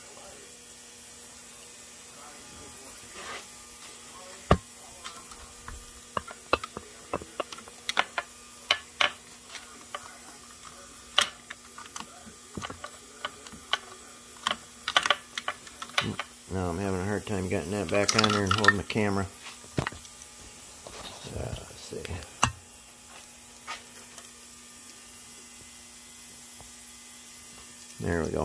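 Irregular sharp metal clicks and taps from a quarter-inch-drive socket wrench and extensions working the hex-head bolts under an outboard powerhead, over a faint steady hum. A little past halfway, a man's low hum or groan lasts about three seconds.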